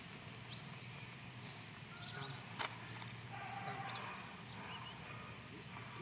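Outdoor ambience with small birds chirping now and then, and a single sharp click about two and a half seconds in.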